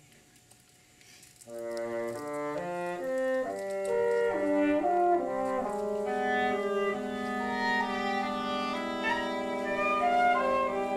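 Woodwind quintet with flute, clarinet, bassoon and French horn playing. After a rest of about a second and a half, the instruments come back in with quick stepping notes and settle into held chords.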